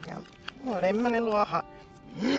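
A woman's voice played backwards: one drawn-out, warbling vocal sound lasting about a second, preceded by a short click about half a second in.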